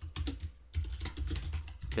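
Typing on a computer keyboard: an irregular run of key clicks, with a short pause about half a second in.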